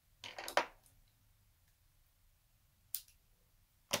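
Short rustle of paper and plastic backing as small foam adhesive dots (dimensionals) are handled and peeled, followed by two sharp clicks near the end.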